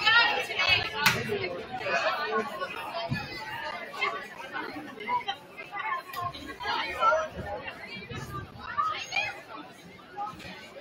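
Several people chatting in a large gym hall, with a sharp knock about a second in and a low thud about three seconds in.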